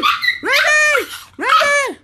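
Small dog giving repeated drawn-out whining cries, each about half a second long and about a second apart, rising then falling in pitch.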